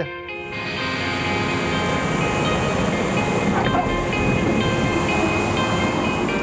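Background music over the steady rushing noise of a small plane's engine, which rises in just after the start and holds even.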